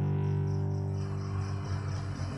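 The karaoke backing track's final chord ringing out and slowly fading away after the last sung line.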